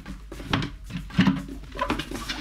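A bedside cabinet drawer being pulled out and taken off the cabinet: sliding and handling with a few knocks, the loudest just over a second in.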